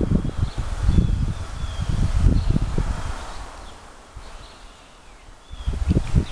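Wind gusting on the microphone as a low, uneven rumble that fades out about halfway through, with a few faint high chirps above it.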